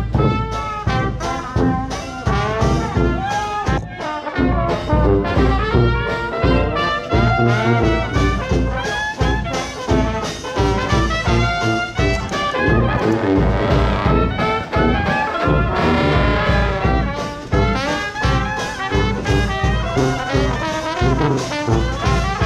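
New Orleans-style traditional jazz band playing together, with trombone, trumpet and clarinet over a brass bass, banjo and bass drum keeping a steady beat.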